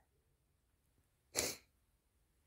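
A single short, sharp sniff through the nose about one and a half seconds in, with near silence around it.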